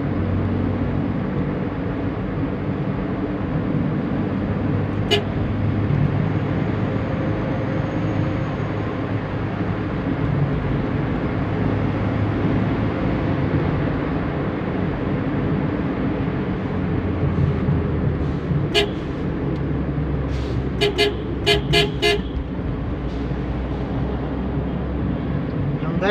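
Steady road and engine noise of a vehicle driving along a highway, with a quick run of about five short horn toots around twenty seconds in.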